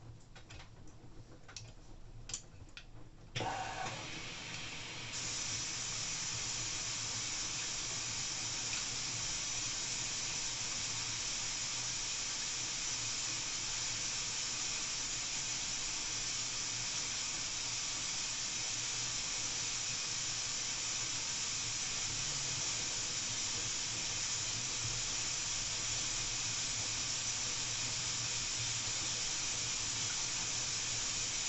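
LG AI DD direct-drive front-loading washing machine in its final rinse: light clicks of the tumbling drum and clothes, then about three seconds in the water valve opens and a steady hiss of water filling the drum starts, getting louder a couple of seconds later, over a low hum from the machine.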